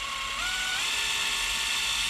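Cordless drill with a small 1/16-inch bit boring slowly into the wooden base of a tip-up for an eyelet pilot hole. It runs as a steady motor whine whose pitch steps up a little under a second in as the drill speeds up.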